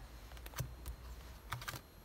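Tarot cards being turned over and laid down on a tabletop, giving a few light clicks and taps.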